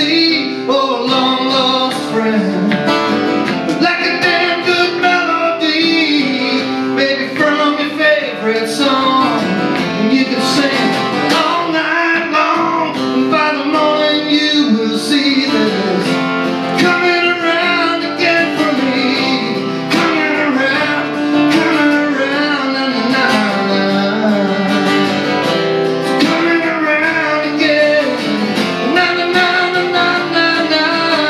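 Acoustic guitar strummed steadily in a live solo performance, with a man's singing voice over it.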